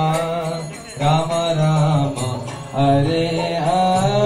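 Devotional chanting sung in a slow melody of long held notes, with short breaks for breath about a second in and near three seconds.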